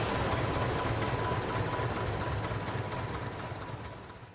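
Light airplane's piston engine and propeller running steadily with a low throb, heard from a wing-mounted camera; the sound fades out near the end.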